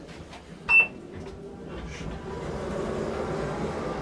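Kone KSS280 elevator giving one short, high electronic beep about a second in, then a low steady hum from the car that slowly builds in loudness.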